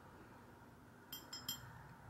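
A paintbrush clinking lightly against the well of a paint palette as paint is picked up: a few quick, small clinks about a second in, over quiet room tone.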